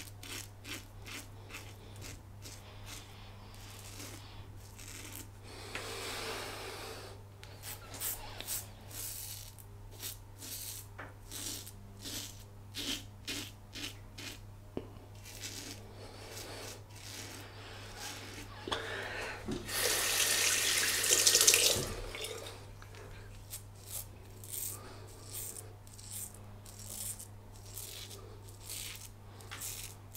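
Muhle R108 double-edge safety razor with a brand-new blade cutting stubble through lather in short, repeated rasping strokes, good audio feedback. A tap runs briefly twice, about six seconds in and more loudly about twenty seconds in.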